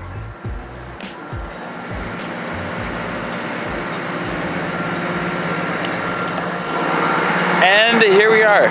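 Background music with a beat fades out in the first couple of seconds. It gives way to the steady hum of a diesel train idling at a station platform, growing louder. A man's voice starts near the end.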